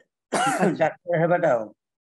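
A man clearing his throat, two short rasping clears in a row.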